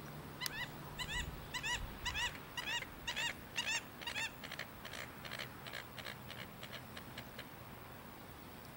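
Waterfowl calling in a series of repeated honking calls, about two a second. The calls are loudest about three to four seconds in, then grow shorter and fainter toward the end.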